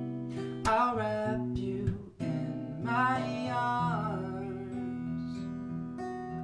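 Acoustic guitar playing an R&B ballad accompaniment, with a man's sung notes bending up and down over it in the first few seconds. The guitar carries on alone after about four seconds.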